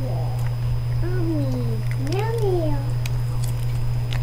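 A person humming two drawn-out singsong "mmm" notes, the first sliding down in pitch and the second rising then falling, over a steady low hum.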